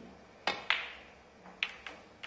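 Snooker cue tip striking the cue ball, followed a quarter second later by a louder, ringing click as the cue ball hits an object ball. Two more sharp ball-on-ball clicks come near the end as the cue ball runs into the pack of reds.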